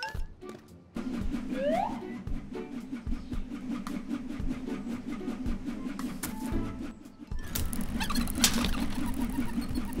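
Cartoon background music with an even beat, with a short rising whistle-like sound effect early in the music. In the last couple of seconds a rushing of air joins in from an electric desk fan blowing.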